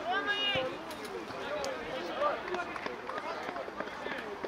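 Players shouting calls to one another during a football match, with a loud call at the start and a few short sharp knocks, likely the ball being kicked.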